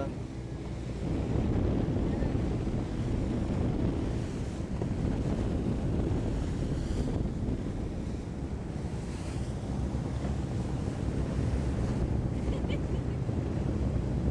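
Wind buffeting the microphone aboard a motor cruiser under way, over a steady low rumble of its engine and the rush of water along the hull.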